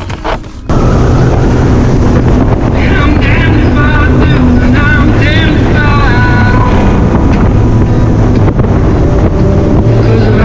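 A bass boat's outboard motor running at speed, with heavy wind noise on the microphone. It cuts in suddenly, less than a second in, and then runs loud and steady.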